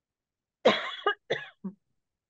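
A woman coughing three times in quick succession, the first cough the loudest, starting a little over half a second in.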